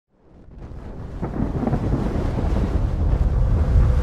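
Cinematic intro sound effect: a deep thunder-like rumble that fades in from silence and keeps swelling, with a few crackles early on its rise and a faint held tone coming in near the end.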